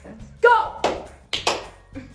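A short shouted exclamation, then about three sharp smacks, one after another, in the following second.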